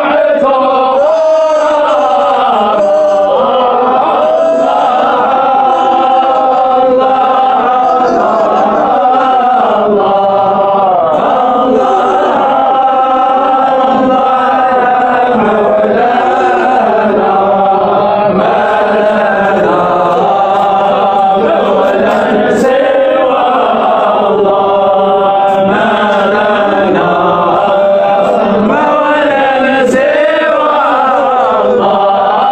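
Men's voices chanting a Sufi samaa (devotional chant), singing long drawn-out notes that glide slowly up and down in pitch without pause.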